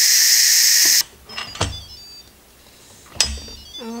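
Instant Pot steam release valve venting the last pressure after a natural release: a loud, steady hiss of steam that cuts off abruptly about a second in. Two light knocks follow in the quiet.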